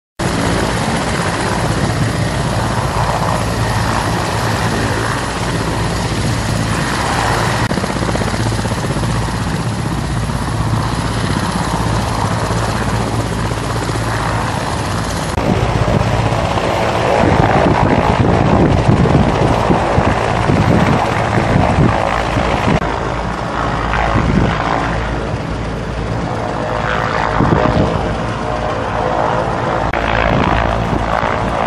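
Engine of an eight-wheeled armoured personnel carrier running steadily at close range. About halfway in it becomes louder and rougher, with footsteps and rustling gear close by.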